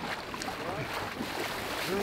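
Icy water splashing and sloshing as a bather wades out of an ice hole, with faint voices of people around it.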